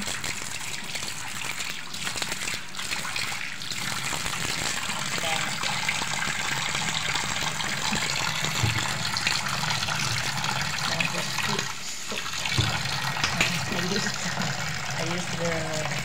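Water running steadily from a kitchen tap into a stainless steel sink, splashing over a hedgehog held under the stream.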